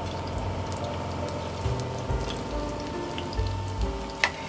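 Soft background music with steady bass notes, over oil sizzling and crackling as batter-coated green chillies fry in a shallow pan.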